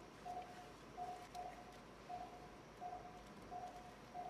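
Faint operating-room patient monitor beeping: short beeps at one steady pitch, about six in four seconds. This is the pulse-oximeter tone, which sounds once with each heartbeat of the patient under surgery.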